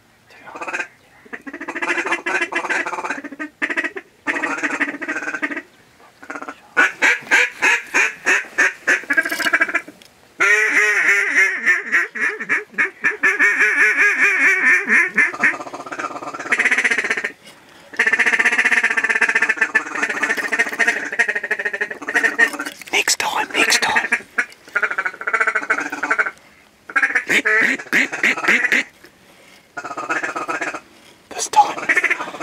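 Duck call worked by a hunter: runs of quacks and fast feeding chatter, then longer drawn-out calls, broken by short pauses.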